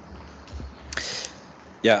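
Clicks and a short rustle picked up by an open conference desk microphone over a steady hiss, then a voice says "Yeah" near the end.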